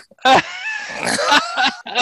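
Men laughing together, with a loud burst of laughter just after the start.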